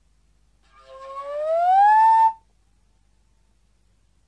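Vermeulen flute, a straight-blown slide flute, playing a single note that swells from quiet and glides smoothly upward in pitch, levels off briefly, then stops suddenly a little over two seconds in.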